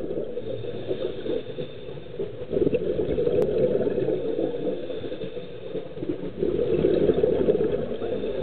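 Muffled underwater noise heard through a camera housing: a scuba diver's regulator breathing and exhaled bubbles, swelling louder about three seconds in and again near the end.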